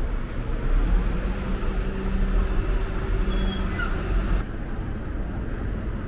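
Garbage truck running with a loud low rumble and a steady hum, with a few short high squeaks about three and a half seconds in. After about four and a half seconds it cuts to quieter outdoor street ambience.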